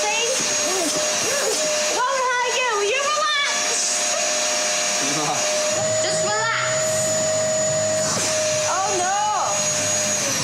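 A household vacuum cleaner running, its motor whine holding one steady pitch throughout.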